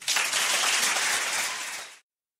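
Audience applauding steadily, easing slightly near the end and then cut off abruptly.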